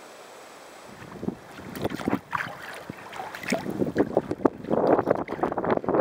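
A faint steady river hiss, then from about a second in, sea kayak paddle strokes splashing and dripping irregularly, with wind buffeting the microphone.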